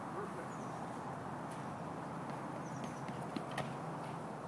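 A pole vaulter's run-up: a few sharp footfalls on the rubber track growing through the second half, with a louder knock near the end as the pole is planted, over a steady outdoor noise bed.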